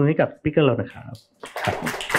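A man's voice speaking briefly, then from about a second and a half in, a dense, even hiss of audience applause with talk continuing underneath.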